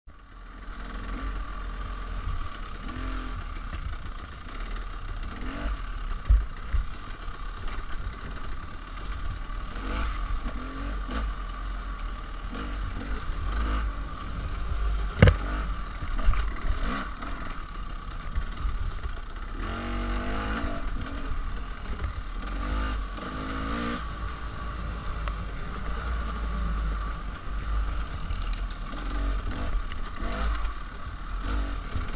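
Bike being ridden along a rough dirt singletrack: steady wind rumble on the camera's microphone with the rattle and clatter of the bike over the ground, and one sharp knock about halfway through.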